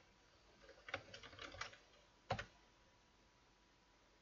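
Faint computer keyboard typing: a quick run of keystrokes typing out a short command, then one louder keystroke as Enter is pressed a little over two seconds in.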